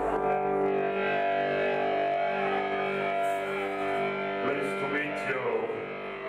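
Live post-punk band starting a song: electric guitar through effects playing sustained, ringing notes that begin right at the start, with brief high metallic splashes from about halfway through.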